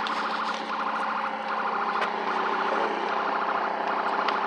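A car's electronic warning tone beeping rapidly and repeatedly, over a low steady hum.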